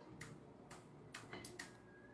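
Faint, sharp clicks from a computer mouse and keyboard, about five scattered over two seconds.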